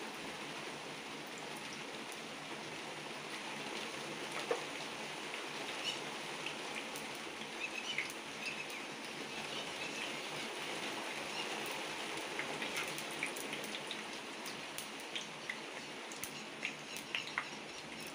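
Fenugreek seeds sizzling in hot oil in a clay pot as they are tempered: a steady hiss with scattered small pops and crackles, which come more often in the second half.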